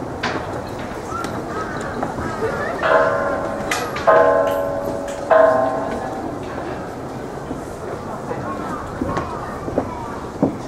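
A ringing tone sounds three times, about a second apart. Each starts sharply and fades out, over faint background voices.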